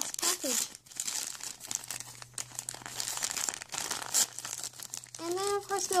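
Gift wrapping paper crinkling and tearing as a present is unwrapped by hand, in irregular rustles and rips.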